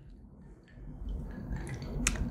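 Pink grapefruit juice pouring from a bottle into a glass of vodka, starting under a second in and growing louder.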